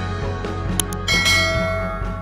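Background music with a short click and then a bright, ringing bell-like chime about a second in: the sound effect of an animated subscribe button and notification bell.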